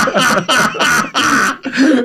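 A man laughing hard behind his hand, a quick run of short breathy bursts, several a second.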